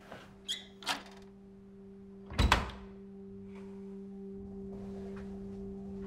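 Two sharp clicks in the first second, then a heavy thud about two and a half seconds in, over a steady low drone that slowly grows louder.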